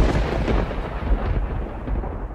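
A thunderclap that breaks suddenly, followed by a low rolling rumble. The crackle fades after about a second and a half while the rumble carries on.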